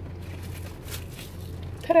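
Steady low hum of a car cabin, with a faint short rustle about a second in.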